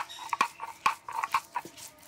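Grinding stone being worked over peanuts on a flat stone slab (shil-nora), crushing them to powder: a run of short, rough scrapes and knocks, several a second.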